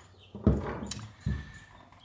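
Knocks and handling noise as a scooter stator and its wiring harness are set down and moved about on a plywood board: three short knocks in quick succession, with light rustling between.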